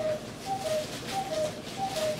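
A bird calling a repeated two-note phrase, a higher note followed by a slightly lower one, about three times in two seconds at an even pace.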